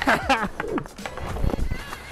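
A man's laughing shout, then ice skate blades scraping and knocking on ice in short irregular hits, with a dull thud about a second and a half in as the skater goes down on the ice.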